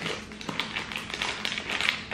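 Plastic wrapper of an ice cream sandwich crinkling as it is torn and peeled open by hand, a rapid run of irregular crackles.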